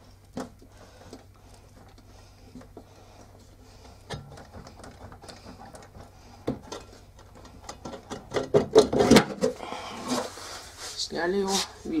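The magnetic rotor of an LG direct-drive washing machine motor being worked loose and pulled off its shaft by hand: faint scattered clicks, then a loud scraping clatter about eight to nine seconds in as it comes free.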